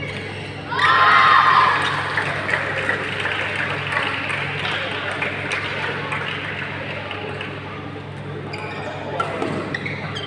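A loud, short shout about a second in, then voices and scattered sharp taps and knocks in a busy badminton hall, with a second, falling call near the end.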